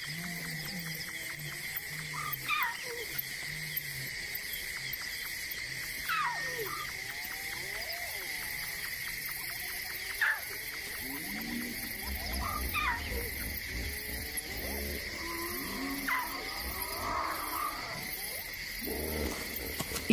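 A lone lion cub calling for its pride: short cries repeated every few seconds, several falling in pitch, over the steady chirring of night insects. A low rumble comes in about halfway through.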